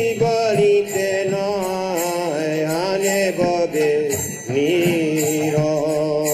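Devotional kirtan chant: a voice singing long, held melodic lines, with small hand cymbals striking in a steady rhythm.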